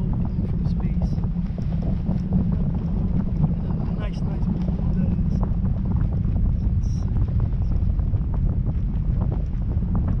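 Steady wind buffeting the microphone of a camera on a parasail in flight: a constant low rumbling rush of airflow with no break.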